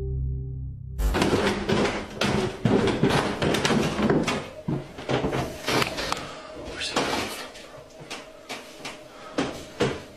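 A low, steady droning tone for about the first second, cut off suddenly, then a quick run of knocks, bumps and clatter from people moving through a house and handling doors, thinning out after about seven seconds.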